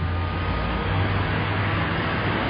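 Cars driving past on a city street: a steady low engine hum over road noise.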